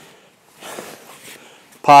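A faint, brief rustle of cotton karate uniforms as two men move through a grappling technique, then a man's voice starting near the end.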